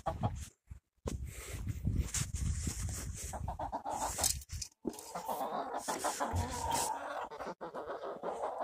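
Rhode Island Red hens clucking.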